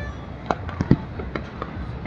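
Fireworks going off in an irregular series of sharp bangs, about five in two seconds, the loudest near the middle.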